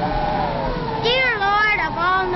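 Cartoon cat meowing: one long rising-and-falling yowl starting about a second in, over steady held tones.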